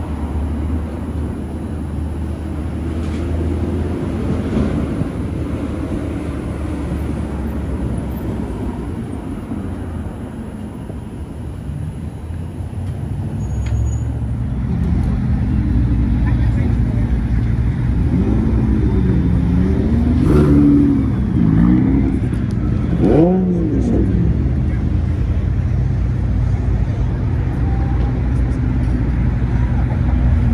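Car engines running: a steady low idle, then from about halfway a louder engine with a few revs rising and falling.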